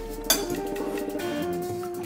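Background music with held, steady notes, and a single light clink of cutlery on a plate about a third of a second in.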